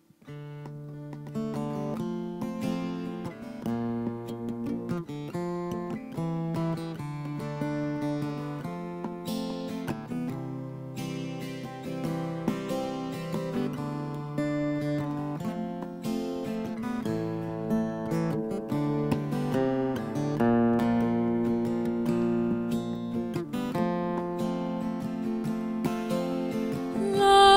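Solo acoustic guitar playing a repeating picked chord pattern, starting suddenly out of silence.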